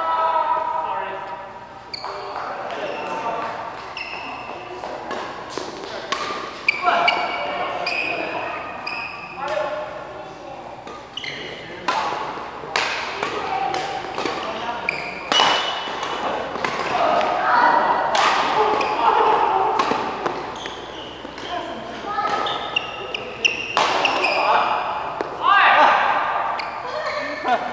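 Badminton rally in a large echoing hall: irregular sharp cracks of rackets hitting the shuttlecock, with short high squeaks of court shoes on the mat and voices in between.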